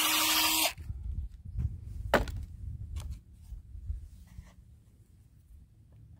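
Cordless drill running as it bores a pilot hole into a wooden board, stopping suddenly less than a second in. Then a few clicks and knocks as the drill and a screw are handled, the loudest a sharp click about two seconds in.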